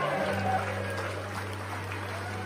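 A live rock band's song cuts off right at the start. It is followed by audience applause and cheering over a steady low hum from the stage amplifiers.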